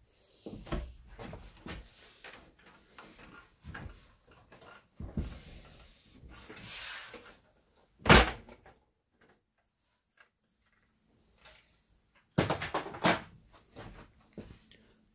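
Plastic front bezel of a PC tower case being worked loose and popped off: scattered knocks and clicks of handling, a scraping hiss about seven seconds in, and a sharp loud knock about eight seconds in. Near the end comes a rapid burst of plastic clicks and rattles as the cover's clips let go.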